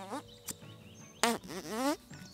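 A handheld rubber fart machine being squeezed, making buzzy fart noises: a short one at the start and a louder, longer one in the second second that rises in pitch toward the end.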